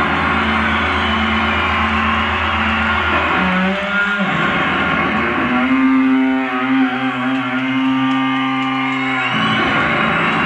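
Live electric bass solo in a rock arena: long held, ringing bass notes and chords that change every few seconds, with a pitch slide a little past four seconds in.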